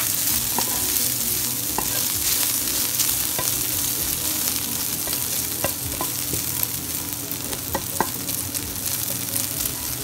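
Chopped bacon and spring onion sizzling steadily in a non-stick frying pan as they are fried to crisp up, with scattered light scrapes and taps of a slotted spatula stirring them.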